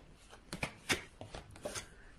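Faint handling of tarot cards: about half a dozen soft, sharp clicks and taps spread over two seconds.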